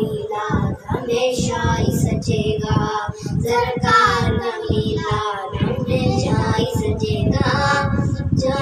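Boys singing an Urdu naat in praise of the Prophet into a handheld microphone, a continuous sung melody.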